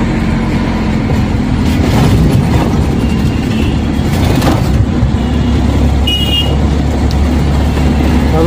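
Ashok Leyland Dost pickup's common-rail diesel engine running steadily with road noise, heard from inside the cab while driving. Two short high beeps stand out, a faint one about three seconds in and a clearer one about six seconds in.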